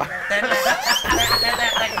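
Several men laughing and exclaiming over one another. About a second in, a high whistle-like tone rises briefly and then glides slowly down.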